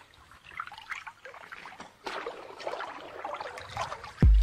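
Water trickling and splashing in an irregular, uneven patter.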